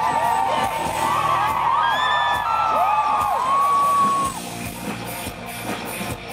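Rock band playing live, with a high singing voice and many voices rising and falling in pitch over the music. These stop about four seconds in, and the band plays on more quietly with electric guitar.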